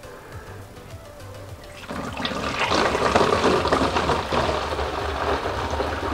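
Honey and water syrup pouring from a stainless steel stockpot through a plastic funnel into a plastic demijohn, a steady splashing gush that starts about two seconds in. It is poured from high up to aerate the must for a wild-yeast mead ferment.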